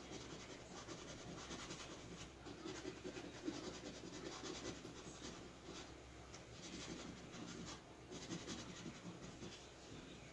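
Faint scratching of a scratch-off lottery ticket, the coating being rubbed off in many short, irregular strokes.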